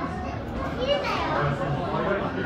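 Children talking and calling out, one high voice gliding up and down about a second in.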